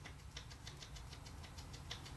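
Faint, quick light ticks and rustling of fingers tying a knot in yarn, over a low steady hum.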